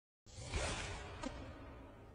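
An airy, hissing fart sound that starts a quarter second in and fades away over about a second, with a short squeak near its tail.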